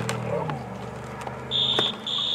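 A whistle starts with a steady shrill tone about three-quarters of the way in, blowing the play dead after a tackle.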